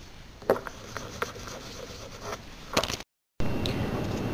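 A few light taps and knocks on a tabletop as medicine vials and supplies are handled, over faint room noise. The sound cuts out briefly about three seconds in.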